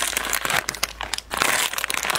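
Plastic wrapper of an individually packed egg-yolk pastry being torn open and crumpled by hand: a dense crinkling crackle, with a brief lull about one and a half seconds in.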